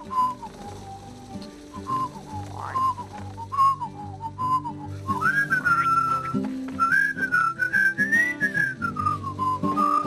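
A person whistling a cheerful tune over light backing music with bass and chords; the whistled melody climbs higher about halfway through.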